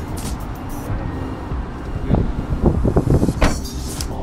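Luggage being loaded into a minivan's rear cargo area: a few knocks and bumps come about halfway through. Under them run a steady low outdoor rumble and music.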